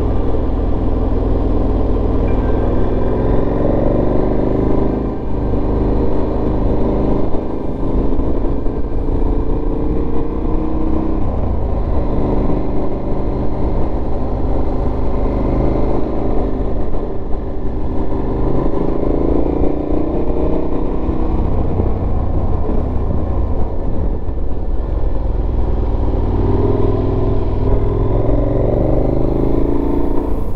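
KTM 1290 Super Adventure S V-twin engine under way, its pitch rising again and again as it accelerates out of bends and dropping at each gear change or roll-off, over a steady low rumble of wind noise.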